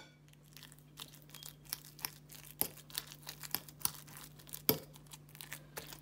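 A metal fork mashing soft boiled potatoes and butter in a bowl: soft, irregular clicks and scrapes of the tines, several a second, over a faint steady hum.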